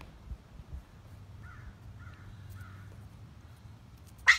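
Three faint short animal calls, about half a second apart, over a low rumble with a couple of soft knocks near the start.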